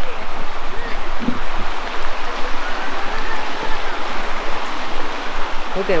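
Creek water rushing over rocks in a steady wash.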